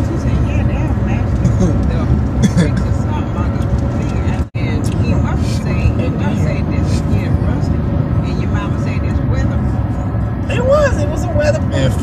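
Steady low road and engine rumble inside a car's cabin, with quiet voices in the background that grow clearer near the end. The sound drops out abruptly for an instant about four and a half seconds in.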